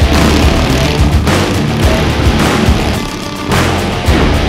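Background music with a heavy beat and steady bass; it thins out briefly about three seconds in, then picks up again.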